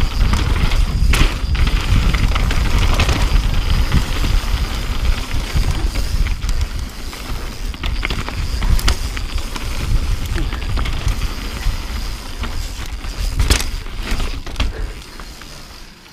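Mountain bike descending a rocky trail: wind buffeting the camera microphone and the tyres and frame rattling over rock, with a few sharp knocks from hits on rock. The noise dies down near the end as the bike slows.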